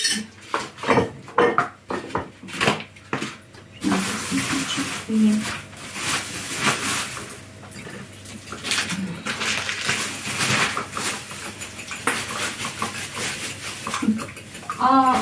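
Stacked plastic egg trays handled and knocked together, giving sharp clicks and crackles, then a plastic carrier bag rustling and crinkling continuously from about four seconds in.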